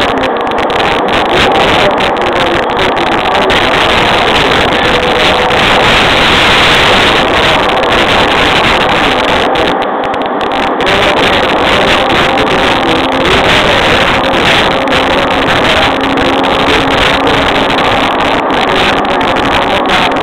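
Running noise inside a JR East E231 series electric train's motor car: a steady, loud rumble of wheels on rail. Faint steady motor tones sit under it, and a low hum shows up in the second half.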